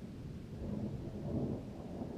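Distant thunder from a thunderstorm, a low uneven rumble that swells slightly a couple of times.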